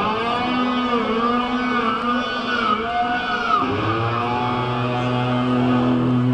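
Live rock band playing, led by electric guitar with long, bending, gliding notes over a held low note.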